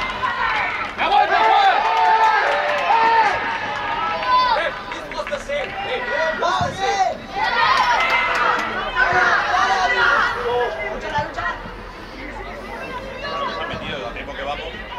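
Shouted calls from players and coaches on a football pitch during play, with spectator chatter behind. The calls come thick for the first ten seconds or so, then die down near the end.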